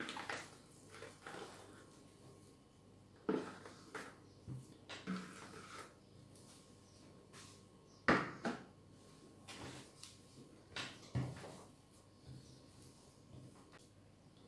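Scattered light knocks and thuds from a large plastic mixing bowl being handled as soft dough is turned out onto a floured counter and the bowl is set aside. The loudest knock comes about eight seconds in, with a few softer ones before and after.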